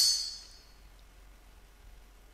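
A high metallic ring, most likely an air rifle pellet striking metal, dying away within about a second.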